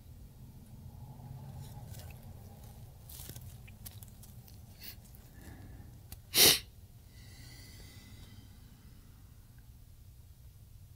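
A person sneezes once, a short, sudden, loud burst about six and a half seconds in. It stands out from a few soft breaths and a low steady room hum.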